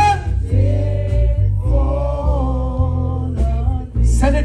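Live gospel music: electric bass and electric guitar play under a singing voice, with a long held line in the middle.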